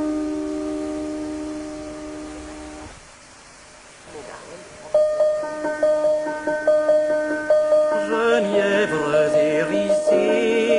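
A piano chord fades out over about three seconds at the end of one art song, then there is a short near-silent pause. About halfway in, the piano starts the next song with a repeated high note under chords, and a classical singing voice with vibrato comes in near the end.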